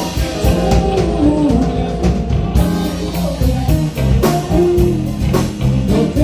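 Live band playing an instrumental passage: a saxophone melody of held notes over an electric bass guitar line and a steady drum beat.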